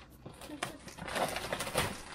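Loose plastic shrink wrap crinkling and rustling as it is pulled off a cardboard box, with a denser crackle in the second half.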